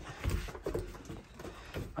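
Faint irregular knocks and low rumble on wooden deck boards, from a power wheelchair rolling and someone walking across the deck.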